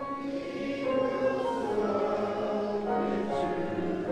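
Many voices singing a hymn together, holding long notes, with a new phrase starting right at the beginning.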